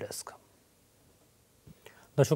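A man's speech trailing off, then a pause of near silence about a second long, with a faint short sound near the end just before he speaks again.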